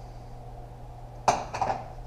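A sharp metallic clink about a second and a quarter in, then a few lighter clinks: steel automatic-transmission parts being handled on a metal workbench during teardown. A steady low hum runs underneath.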